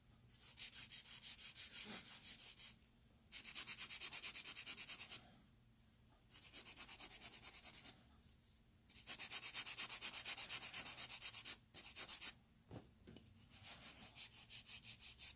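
Hand nail file rasping back and forth across artificial powder nails to shape them: quick, even strokes, about five a second, in runs of a couple of seconds with short pauses between.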